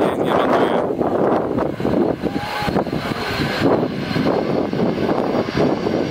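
Strong wind buffeting the microphone in gusts, over the jet engines of an airliner approaching to land; a thin steady engine whine comes in around the middle and holds.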